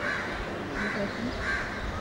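A bird calling outdoors: three short calls, evenly spaced under a second apart, over a low background murmur.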